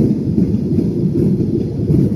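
Steady low rumble inside a jet airliner's passenger cabin as it climbs out after takeoff: engine and airflow noise.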